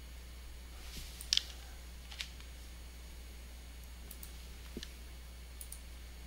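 A few sparse computer mouse clicks; the loudest is a quick double click about a second in. A steady low hum sits underneath.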